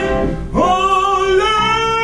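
Male tenor singing a sustained phrase with vibrato over an accompaniment, the song pitched a whole tone higher than usual. A brief break comes about half a second in, then his voice slides up into a held note that steps to a higher held note near the end.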